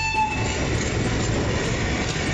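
A train horn sounds one steady note that stops about half a second in, over the even rumble of a train running on the tracks.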